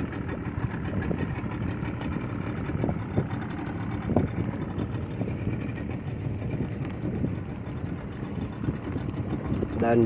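Speedboat outboard motor running at low speed as the boat moves off, a steady drone.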